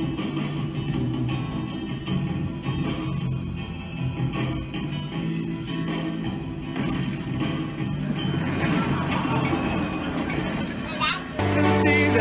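A live church worship band playing, with voices over the music. About a second before the end the sound cuts suddenly to a different, louder song with strong sustained low notes.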